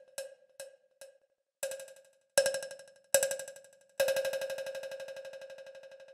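Sampled cowbell from the GCN Signature Three Cowbells Kontakt library, struck several times through its delay effect. The first hits trail off in spaced echoes. The last, about four seconds in, sets off a fast flutter of repeats that fades away over about two seconds.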